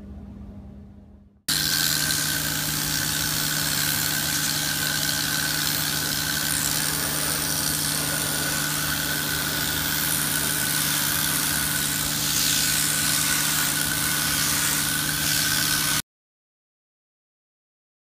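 1400 PSI pressure washer running steadily, its motor humming under the hiss of the water jet as it blasts dissolved dip off a car roof. It starts abruptly about a second and a half in and cuts off suddenly near the end.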